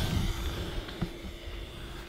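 Electric motor and propeller of an FMS 1100mm Zero RC warbird fading as the plane flies away after a low pass, a faint steady hum under low rumble.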